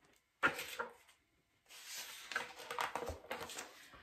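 Pages of a large picture book being handled and turned: a short paper rustle about half a second in, then a longer stretch of rustling and flipping pages that runs until near the end.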